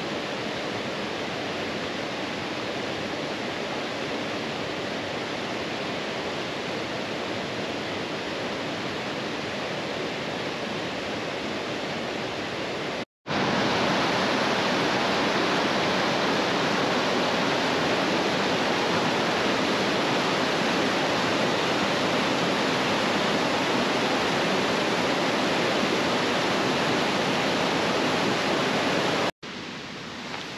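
Mountain creek rushing over rocks, a steady noise of flowing water. About 13 seconds in it cuts to a closer, louder cascade tumbling over boulders, and near the end it cuts to a quieter rush.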